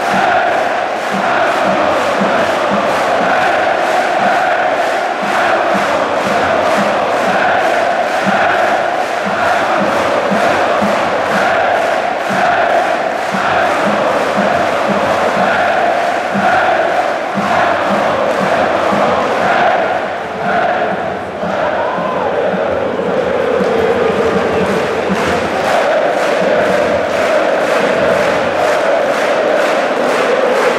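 Large football crowd of home fans chanting in unison across the stadium over a steady, regular beat. The chant falters around twenty seconds in, then a new, lower chant takes over.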